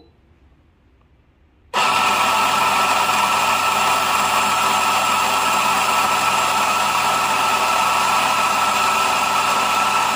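An RF64W weight-dosing espresso grinder with 64 mm flat burrs, grinding coffee beans into a portafilter. The motor starts suddenly about two seconds in and runs at a steady, even pitch.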